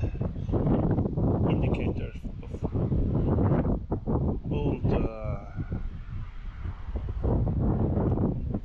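Wind buffeting the microphone, with crackling and rustling as dry soil and straw stubble are crumbled and sifted by hand. A short wavering pitched sound comes about five seconds in.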